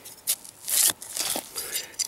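Knife blade digging and scraping through stony soil and roots, grating on a buried rock, with a few rough scrapes and clicks. The loudest scrape comes about three-quarters of a second in.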